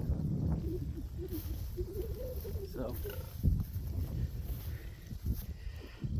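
Wind rumbling on the microphone in an open field. For the first few seconds a low, indistinct voice-like sound runs beneath it, and a couple of brief knocks follow.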